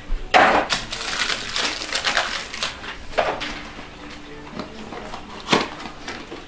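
Rustling and clattering of packaging and small items being pushed aside and handled, busiest in the first few seconds, with a sharp knock about five and a half seconds in.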